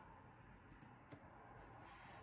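Near silence, with a couple of faint button clicks as the menu is paged forward.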